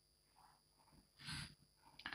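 Near silence, with one short, faint stroke of chalk on a chalkboard about a second and a quarter in.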